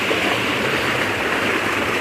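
Shallow rocky stream rushing and splashing over boulders and small cascades close by, a loud, steady rush of water.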